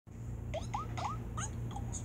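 Cartoon squeak sound effects played through a TV speaker: about five short, quick rising squeaks in under two seconds, over a steady low hum.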